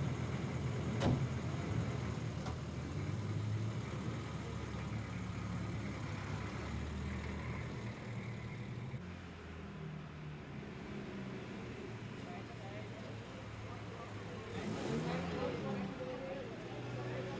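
A motor vehicle's engine running at low revs, its low hum shifting in pitch, with people's voices around it. A single sharp knock about a second in.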